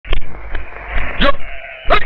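Goat bleating twice, about a second in and again near the end, each call rising in pitch, over a steady outdoor village ambience.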